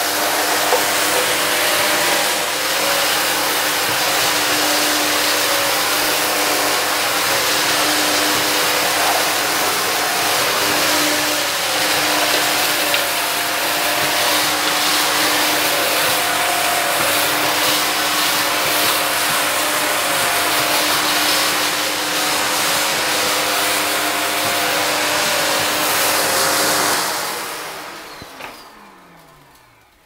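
Shark DuoClean upright vacuum cleaner running on a hard tiled floor, picking up spilled dry debris, a loud steady motor noise with a humming whine. About 27 seconds in it is switched off and the motor winds down, its pitch falling away.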